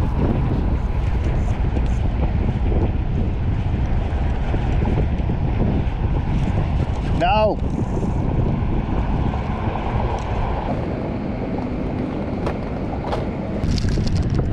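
Wind rumbling steadily on the microphone from a kayak on open water. About seven seconds in comes one short call that rises and then falls in pitch.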